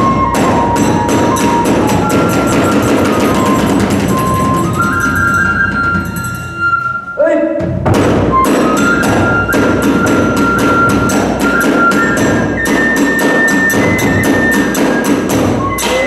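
Kagura festival music: a bamboo transverse flute playing a high, stepping melody over fast strokes of a large barrel drum and small hand cymbals. The ensemble breaks off briefly about seven seconds in and then starts up again.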